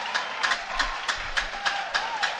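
Audience clapping in time, about four claps a second, over a faint wavering tone.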